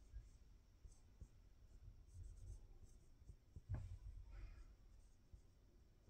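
Faint scratching of a dry-erase marker writing on a whiteboard, with a few soft low bumps from the board being held.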